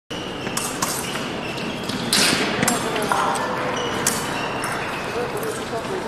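Echoing large-hall background: indistinct distant voices with several sharp knocks and thuds scattered through, over a faint steady high-pitched tone.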